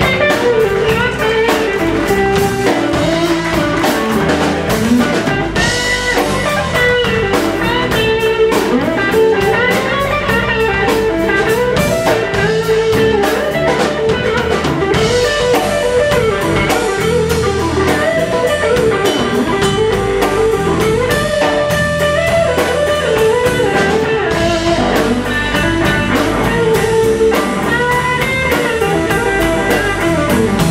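Live blues band playing an instrumental passage: an electric guitar plays lead lines with bent notes over drums and bass guitar.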